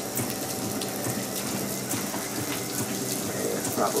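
Water sprayed from a hose onto a car's windshield and hood, hissing and pattering steadily to fake rain. A faint steady hum runs underneath.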